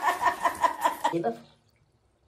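A person laughing in quick, evenly repeated ha-ha pulses that stop abruptly about a second and a half in.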